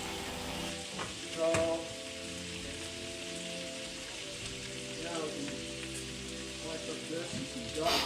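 Meat being seared, giving a steady sizzling hiss.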